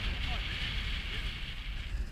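Wind buffeting the camera microphone: a steady low rumble with a hiss above it.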